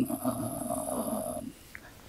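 A man's voice: a drawn-out, rough hesitation sound held in the throat, trailing straight on from his last word and stopping about a second and a half in.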